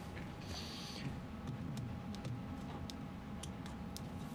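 Faint scattered clicks and light handling noise over a low steady room hum, with a brief hiss about half a second in.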